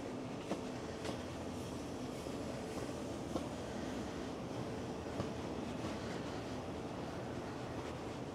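Steady mechanical hum of an outdoor air pump unit on a building, over a wash of street ambience, with a few faint clicks.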